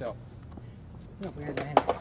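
A few sharp clacks of a skateboard popping and landing, the loudest just before the end, with a short shout mixed in.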